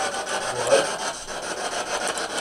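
Spirit box sweeping through radio stations: rapid, evenly chopped static, with a short voice fragment in the middle.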